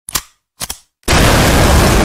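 Two brief clicks, then, about a second in, a loud harsh burst of crackling noise lasting about a second: a blast-like sound effect that goes with a strike being added on the error screen.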